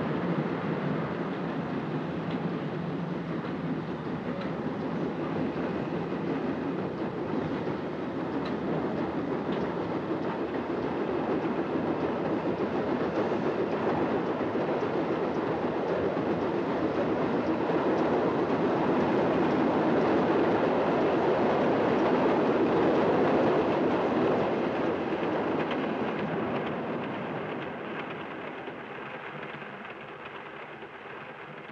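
Steam train running at speed, a steady rushing rattle that slowly builds, is loudest a little past the middle, and then fades away near the end.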